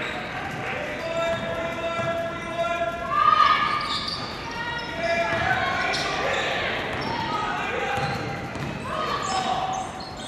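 Live gym sound of a basketball game: players and spectators calling out and shouting over each other in a large hall, with a basketball bouncing on the hardwood floor.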